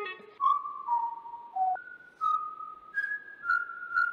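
A single high, whistle-like melody line of about seven held notes, stepping up and down in D# minor with sudden changes of pitch, after the tail of a plucked electric-guitar chord.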